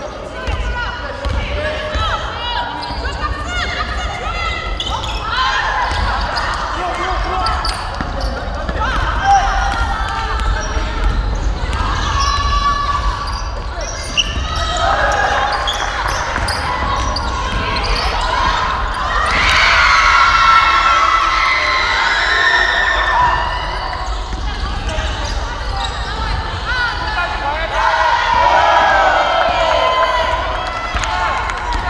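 A basketball bouncing on a hardwood gym floor during play, with players and onlookers calling out and shouting, echoing in a large hall. The voices are loudest about two-thirds of the way through.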